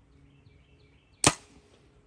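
Compound bow shot: the string is released with one sharp, loud crack about a second in, followed by a short decaying tail.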